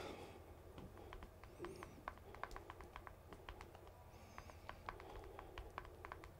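Near silence with faint, irregular light clicks, a few a second, and two brief faint high chirps, one about a second and a half in and one about four seconds in.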